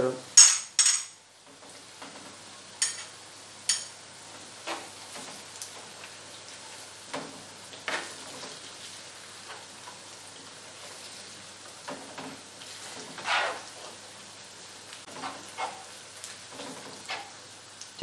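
Metal spoon clinking and scraping against a frying pan as tomato paste is spooned into sautéed onions, loudest in a clatter in the first second, then scattered single clinks and scrapes. A faint steady sizzle of the onions frying in oil runs underneath.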